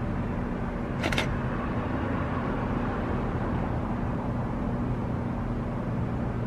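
Steady low mechanical hum of running machinery, with a short, sharp high-pitched clink about a second in.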